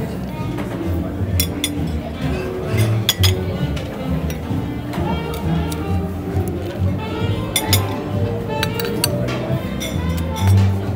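Metal serving tongs clinking against stone crab claws and the steel buffet tray, a few sharp clicks coming in small clusters, over background jazz music.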